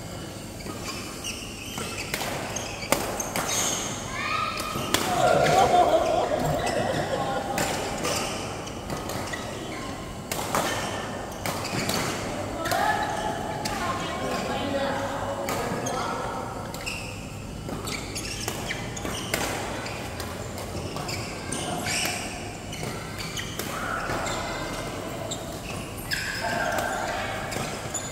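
Badminton rally in a large, echoing hall: rackets striking the shuttlecock in sharp, irregular cracks, with players' voices and calls coming and going between the hits.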